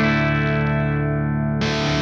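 Cort G290 FAT II electric guitar played with distortion: a chord is struck and held ringing for about a second and a half, then a denser, brighter passage begins.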